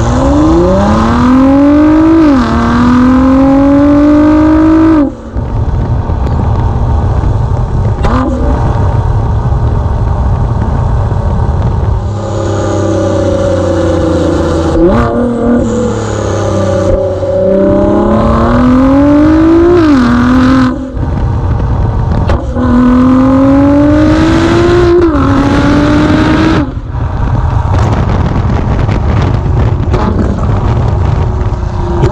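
2017 Ford GT's twin-turbo V6 heard at its twin exhaust outlets under hard acceleration. The engine note climbs, drops at an upshift, climbs again and then stops abruptly as the throttle is lifted. This pattern of pulls and shifts happens several times.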